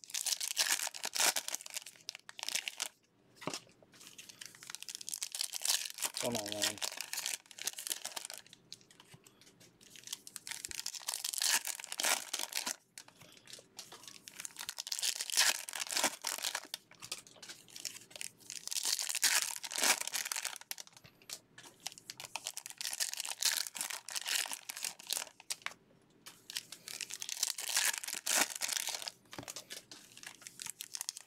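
Foil wrappers of 2020 Bowman baseball card hobby packs being torn open and crinkled by hand, in repeated bursts of crackling with short quiet gaps.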